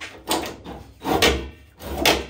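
A few hammer blows on the top of an old wall-mounted water heater tank, the loudest about a second in: the old heater is being knocked to free it from the hooks it hangs on.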